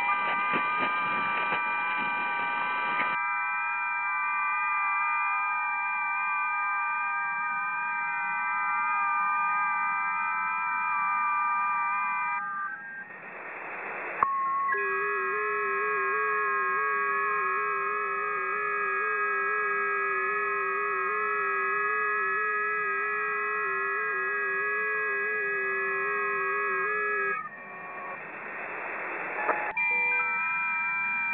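Electric guitar played through effects pedals and an amplifier, holding layered, sustained drone tones. A noisy wash covers the first few seconds, and the drone breaks twice into a short swell of hiss, about halfway through and near the end.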